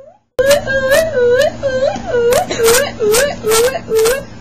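A person's voice moaning short, repeated 'oh' cries, about two to three a second, starting abruptly after a brief dropout of sound.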